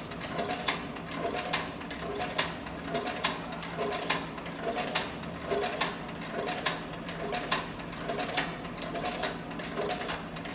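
Cowboy CB4500 heavy-duty harness stitcher (triple-feed, barrel shuttle hook) sewing slowly through four layers of 12–14 oz saddle skirting leather. It makes an even, repeating mechanical clatter, a little more than one stitch cycle a second.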